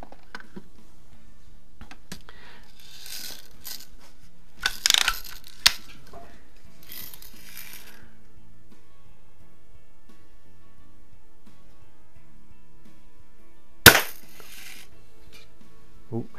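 Daisy 105 Buck lever-action BB rifle being handled and cocked, with rasping and clicking sounds about four to six seconds in. A single sharp shot comes near the end and is the loudest sound, followed by a brief hiss.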